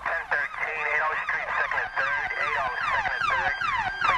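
Police sirens as a sound effect: several overlapping sirens whose pitch keeps sweeping downward, about three sweeps a second, over a steady high tone.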